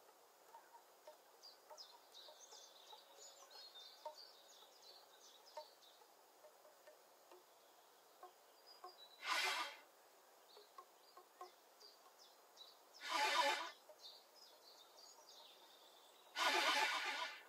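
Two short, breathy rushes of air blown through a shakuhachi, each under a second long and about four seconds apart, standing out well above the background. Faint chirping of many small birds runs underneath, thickest in the first few seconds.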